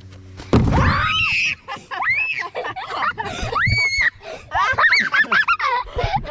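A heavy low thump or rush about half a second in, then children shrieking high and breaking into quick bursts of laughter.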